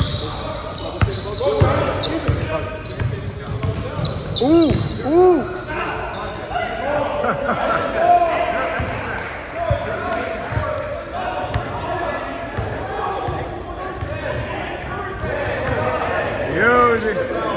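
Basketball game on a hardwood gym floor: the ball bouncing, sneakers squeaking in short rising-and-falling squeals (two close together about four and a half seconds in), and players calling out, echoing in a large gym.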